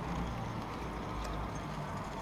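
Chairlift haul rope and chair grip running over a support tower's sheave train, a steady rumble with a light rhythmic clatter as the chair passes the tower and moves on.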